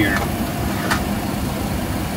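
Steady low rumble of a parked Boeing 737's running systems, heard inside the cockpit, with a single sharp click about a second in.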